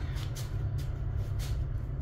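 A steady low rumble, with a few faint, short rustling sounds over it.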